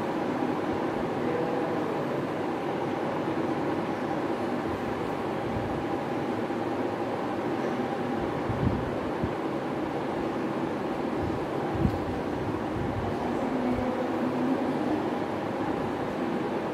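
Steady classroom background noise, a continuous hum-like rumble with a couple of soft low thumps past the middle.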